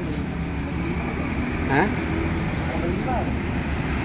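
Road traffic going by: a steady low rumble of passing vehicles, with a short spoken word over it.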